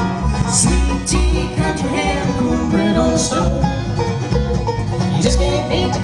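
Live bluegrass band playing: banjo, acoustic guitar and upright bass, with the bass notes pulsing steadily under the plucked strings.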